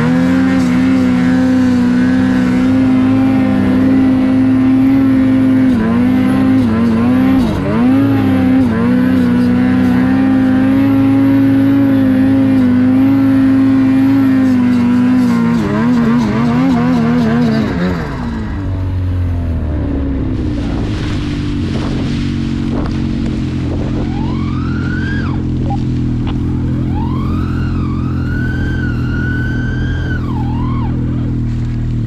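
Ski-Doo Gen 5 turbocharged two-stroke snowmobile engine running at high, steady revs, wavering a few times, then dropping to a lower, steady run about 18 seconds in. Near the end several rising and falling whistles sound over the engine.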